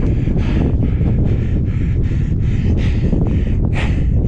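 Wind buffeting the microphone on an exposed snowy ridge, a loud steady rumble, with a rhythmic hiss about three times a second riding over it.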